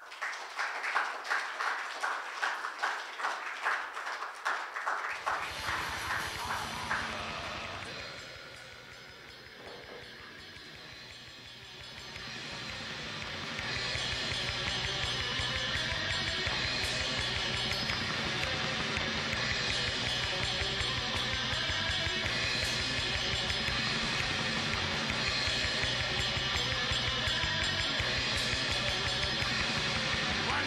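Audience applause for about five seconds, then heavy metal music with drums and bass comes in. It dips briefly and then grows louder and denser at about thirteen seconds.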